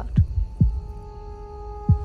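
Tense film underscore: a low heartbeat-like pulse, two thumps close together and then again near the end, under steady drone tones that come in about half a second in and hold.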